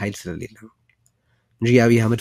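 A man talking, breaking off for about a second of near silence in the middle before going on.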